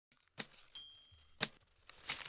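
Typewriter: three sharp key strikes, the second with a short high bell ding ringing after it.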